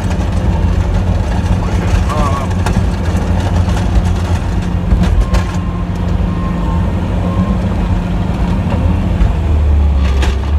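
Plow truck's engine running steadily, heard from inside the cab while the plow pushes snow, with scattered knocks. Three short beeps sound near the middle.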